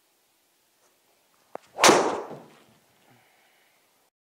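Golf driver striking a ball off a tee in an indoor simulator bay: one loud, sharp impact a little under two seconds in that dies away over most of a second, just after a brief click.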